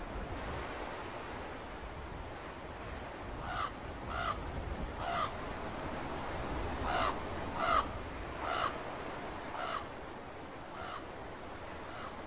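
A crow cawing, about eight calls at irregular spacing that begin a few seconds in, over a steady background hiss.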